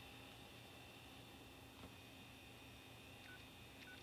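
Faint touch-tone dialing beeps from a wall phone's keypad: two short tones about half a second apart near the end, over near silence.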